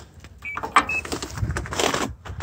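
Pedestrian crossing push button pressed: a click and two short high beeps. Near the end a passing vehicle's noise rises.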